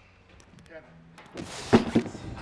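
A mostly quiet stretch, then about a second and a half in a man's voice breaks in loudly with hard, effortful breaths.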